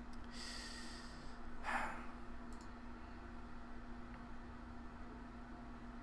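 A man sipping from a mug close to the microphone, then a short breath out about a second later, over a faint steady hum.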